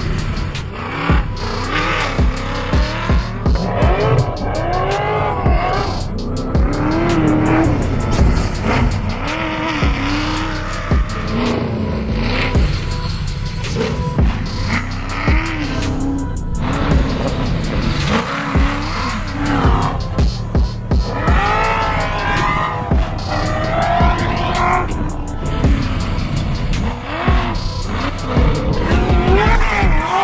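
The long-travel 1965 VW Baja Bug's V8 engine revving up and falling back again and again as it is driven hard through sand. Background music with a steady beat plays along.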